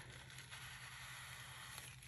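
Near silence: faint room hum with light paper handling as hands press glued paper flat, and one small tick near the end.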